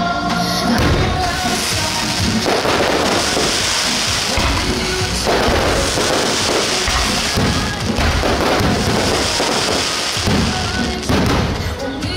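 Aerial fireworks bursting overhead: repeated booms and dense crackling one after another, with music playing underneath.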